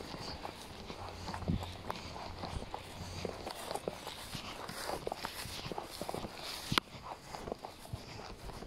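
Footsteps of a person walking on a paved path: a run of light, irregular steps, with one sharper, louder click near the end.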